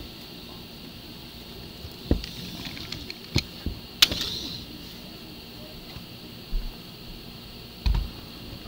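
Hands handling Lego bricks and a block of dice on a tabletop: several separate plastic clicks and knocks. The sharpest comes about four seconds in, and a dull thud follows later.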